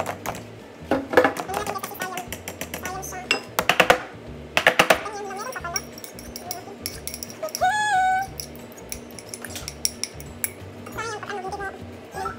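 Spatula and spoon knocking and scraping against a mixing bowl and a metal loaf pan as cake batter is scraped out and spread: runs of sharp clinks and taps, densest in the first five seconds, sparser after.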